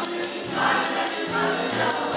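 Children's chorus singing in unison to music, with a steady high percussion beat like a tambourine running under the voices.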